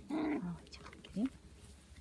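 Six-week-old Shetland sheepdog puppy vocalising in play: a short whiny call at the start, then a brief yelp about a second in that rises quickly in pitch.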